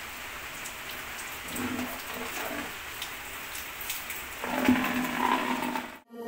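Steady rain falling on a hard surface, with scattered drips. Faint pitched voices sound in the distance, once midway and again near the end.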